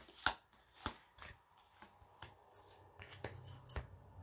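Tarot cards being taken from the deck and laid down on a cloth-covered table: a run of irregular sharp taps and snaps of card stock, with a few light metallic clinks from wrist bangles near the end.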